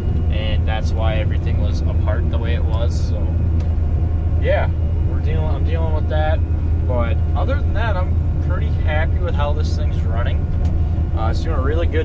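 Steady low drone of a New Holland TR88 combine running while harvesting soybeans, heard from inside the cab, with a man talking over it.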